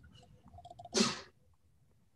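One short, sharp breathy burst from a person close to a call microphone, about a second in, consistent with a sneeze or a forceful exhale. Faint clicks come just before it.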